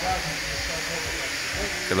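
A steady hiss in the background, with no distinct event in it.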